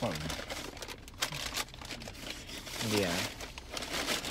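Crinkling and rustling, with a few sharp crackles about a second in.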